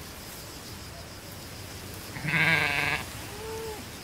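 A sheep bleats once about two seconds in, a quavering call lasting under a second. It is followed by a shorter, softer call that rises and falls.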